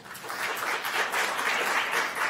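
Audience applauding, swelling quickly at the start and then holding steady.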